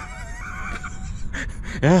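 A man's high-pitched, wavering laugh trailing off, then a short spoken "yeah" near the end.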